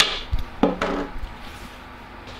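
Small steel nail scissors and a spool of coated braid being put down and handled on a tabletop: a sharp clack at the start, then lighter knocks and rubbing that die away.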